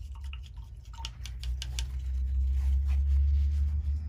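Faint taps and rustles of craft supplies being handled on a table, over a steady low hum.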